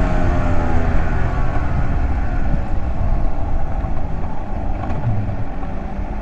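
The Honda NS250R's two-stroke V-twin engine running on the move. Its note falls slowly over the first couple of seconds, then holds steady.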